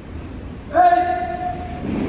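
A single drawn-out shouted drill command from a parade formation, one long call held on one pitch for about a second, starting just under a second in and echoing in the hall.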